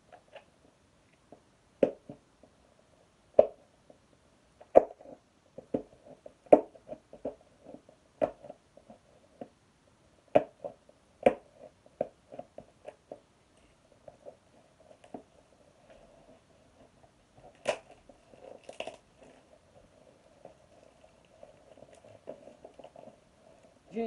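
Hands opening a model vehicle's plastic and cardboard packaging: irregular clicks and snaps, with a longer crinkling crackle about eighteen seconds in.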